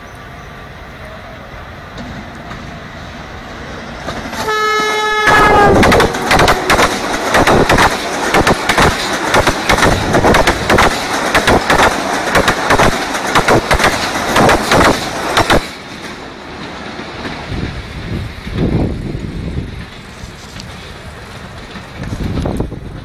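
A Pakistan Railways passenger train approaching and giving a short horn blast about four and a half seconds in, then passing close by at speed for about ten seconds with a rapid rhythmic clatter of wheels over the rail joints. The sound drops off sharply as the last coach goes by and fades into the distance.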